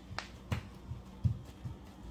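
Several short, soft knocks and taps from a toddler's hands handling the plastic shelf and the packages in an open refrigerator, the loudest a little past halfway.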